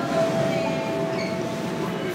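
Steady background noise of a busy airport gate lounge, with a faint held tone through the first half.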